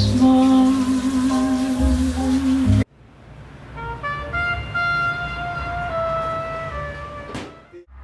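Background music. A held low note with short higher notes under it cuts off abruptly about three seconds in. A slower passage of long, held melody notes follows.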